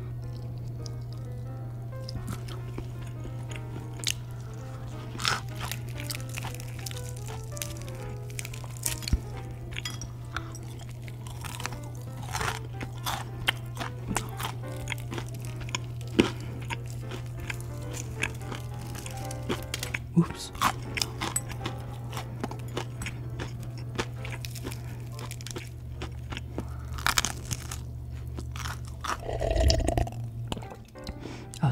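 Crisp fried chicken breading crunching as it is bitten and chewed close to the microphone, many short crackles through the whole stretch. Soft background music runs underneath.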